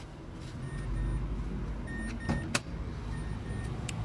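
Car interior warning chime beeping in three pairs of short, high electronic tones about a second and a half apart, with a few sharp clicks, the loudest about two and a half seconds in, over a low rumble.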